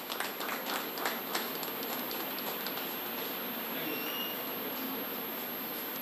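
Scattered hand clapping from a few people, thinning out and stopping about a second and a half in, followed by a steady hiss of room noise.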